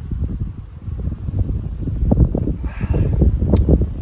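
Wind buffeting the microphone: a low rumble that grows louder about halfway through, with a short breathy sound near the end.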